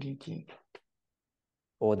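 A man speaking, with a pause of about a second of dead silence, as if gated, before he starts again near the end.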